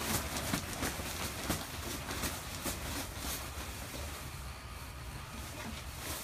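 Faint rustling and handling noises with scattered light clicks over a low steady hum, as a person in an inflatable costume moves about and takes hold of a garden hose.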